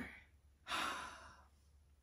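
A single breathy exhale, like a sigh, lasting under a second and starting about two-thirds of a second in, then fading away.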